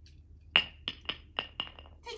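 A hard object tossed onto brick pavers, bouncing: one loud ringing clink, then about five more, coming quicker and fainter as it settles. It is a retrieve article thrown for the dog while he holds a wait.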